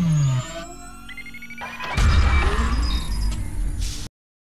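Cinematic logo-intro music with sound effects: a falling pitch sweep fades out about half a second in, then a quieter stretch of high tones, then a deep hit with a low rumble about two seconds in that carries on until the sound cuts off at the end.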